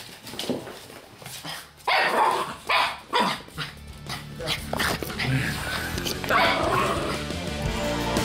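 A dog barking several times in sharp, loud calls, the strongest about two and three seconds in and another near the end. Background music comes in about halfway and runs under the later barks.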